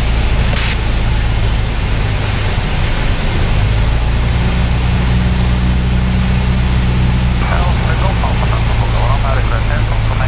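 Piper PA-28's piston engine and propeller droning steadily, heard from inside the cockpit in flight. Its tone shifts slightly about three to four seconds in.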